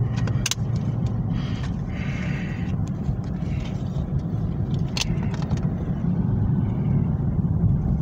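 Steady low rumble of a running car heard from inside the cabin. Over it are a few sharp plastic clicks and rustles as DVD discs are pressed off the hubs of a plastic DVD case and handled.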